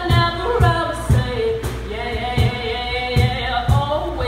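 A woman singing live over music with a steady beat, about two beats a second.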